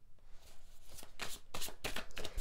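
A tarot deck being shuffled by hand: a quick run of card flicks and slaps starting about half a second in.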